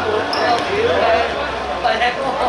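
Players' voices shouting and calling across a hard-surfaced football court, with a sharp thud of the ball being kicked near the end.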